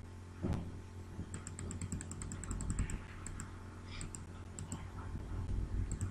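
Faint clicks of a computer mouse: a quick regular run of about nine ticks a second for roughly a second and a half, then a few more scattered clicks, several in pairs, over a low steady hum.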